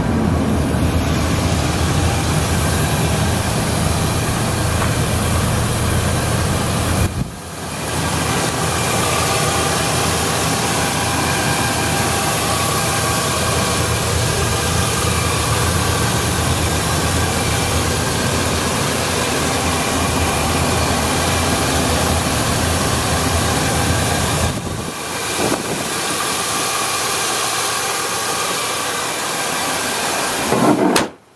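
Chevrolet Silverado 2500HD pickup's engine idling steadily, heard close up with the hood open, with two brief drops in level about seven seconds in and near 25 seconds.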